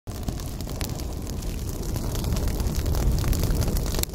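Intro sound effect: a crackling, static-like noise over a low rumble, swelling slightly and cutting off suddenly at the end.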